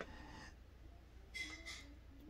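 Quiet room tone with a low steady hum, and a faint, short intake of breath about a second and a half in.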